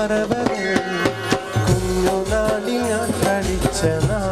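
A man singing a Malayalam Mappila song live into a microphone, with percussion and a steady bass line accompanying him.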